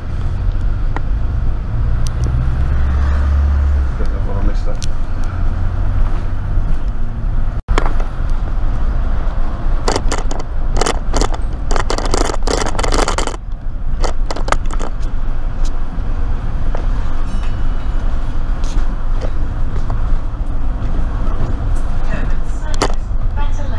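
A London double-decker bus in motion, heard from its upper deck: a steady low engine rumble with road noise and body rattles. A burst of sharp clicking and rattling about ten seconds in lasts roughly three seconds, and the sound cuts out for an instant a little before that.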